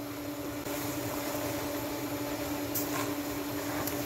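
Steady motor hum with an even hiss over it, like a kitchen fan running, and two faint clicks near the end.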